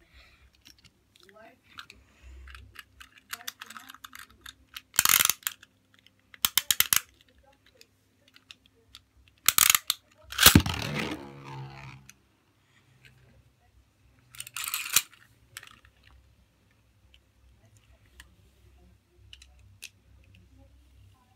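Plastic and metal clicks of Beyblade tops being fitted to their launchers, then, about ten seconds in, a Beyblade launcher ripped: a loud clack and a whir that falls in pitch as the top is released into a plastic stadium and spins there.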